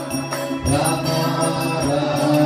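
Devotional kirtan music: a harmonium sustaining a steady drone and chords while a mridanga drum and small hand cymbals keep time. A male voice comes in singing the chant a little over half a second in, and the music gets louder.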